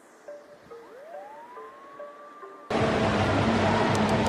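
Title-card transition sound: a few soft electronic blips and a tone gliding upward. About two-thirds of the way in it cuts to steady background noise in a diving hall, with a few light clicks near the end as a die lands and rolls on a tiled floor.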